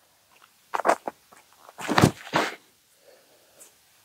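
A disc golfer's steps and throw from a concrete tee pad: a couple of short scuffs just under a second in, then a louder rush of noise around two seconds in as the disc is thrown.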